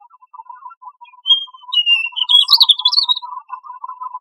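European robin singing one short phrase of thin, high whistles that break into rising warbles, about a second in and lasting about two seconds, over quiet background music.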